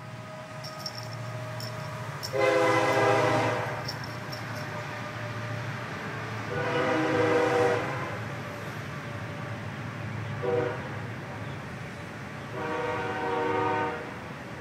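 Train horn sounding the grade-crossing signal: two long blasts, a short one, then a long one, each a steady chord of several tones. A steady low hum runs underneath.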